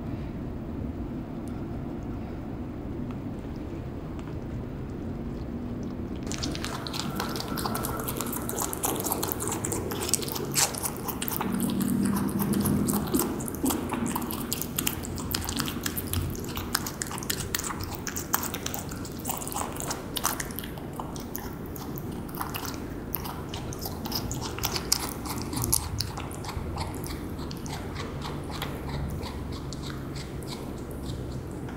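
Rabbit chewing grapes close to the microphone: a fast, irregular run of crisp, wet crunching clicks from its teeth, which becomes clear and close about six seconds in.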